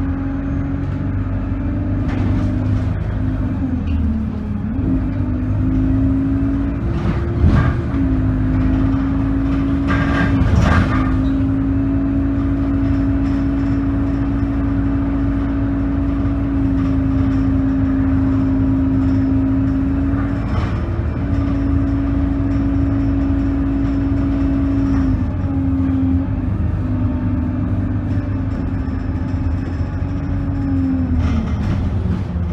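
Inside a moving bus: the engine and drivetrain run with a steady drone over road noise. The drone breaks and dips briefly several times, and a couple of short knocks sound about a quarter and a third of the way in.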